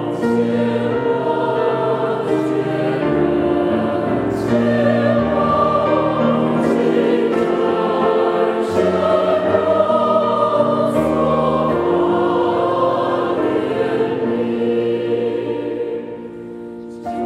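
A church choir singing a hymn in several parts, with long held notes that move together from chord to chord.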